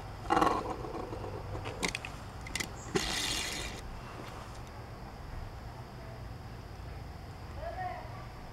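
Small die-cast toy car spinning and rolling on a hard tabletop, with a few light clicks from its wheels and body in the first few seconds.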